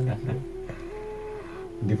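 A short pause in studio talk: a voice trails off, a faint held note steps up in pitch and back down, and a man's laugh starts near the end.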